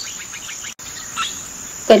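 Crickets chirping steadily in a background ambience track, broken by an instant of silence a little under a second in where the audio is cut.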